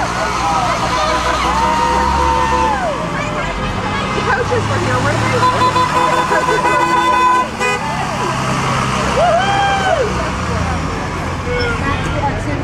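A school bus engine runs as the bus drives past, with whooping and shouted cheers. A vehicle horn sounds one steady blast of about a second and a half shortly after the middle, cutting off suddenly.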